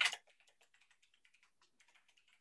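Faint, quick keystrokes on a computer keyboard, a few characters typed in a short run.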